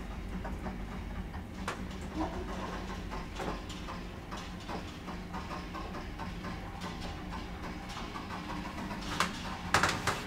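ASEA-Graham elevator car travelling in its shaft: a steady low hum from the hoist machinery with scattered light clicks and knocks, then two sharp knocks near the end.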